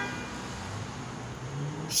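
Low, steady background hum with no distinct events.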